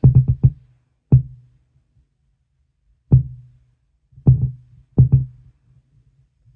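Klipsch R-112SW subwoofer giving random, irregular low thumps, like tapping or banging on a table: a quick burst of several at the start, then single and paired thumps one to two seconds apart. The fault behind the noise was found to be cold solder joints on the amplifier's two TL074C op-amps.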